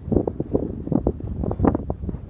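Wind buffeting the microphone in uneven gusts, mostly low in pitch.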